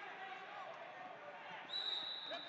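Background hubbub of voices in a large gym, with wrestlers' feet thudding on the mat. Near the end a loud, long, high whistle starts and holds steady.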